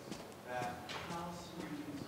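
Faint, distant speech echoing in a hall: an audience member asking a question from the back without a microphone, too quiet to make out the words.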